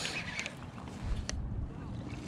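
Baitcasting reel being cranked to bring in a hooked bass, with handling noise, a few light clicks and a low rumble of wind on the microphone.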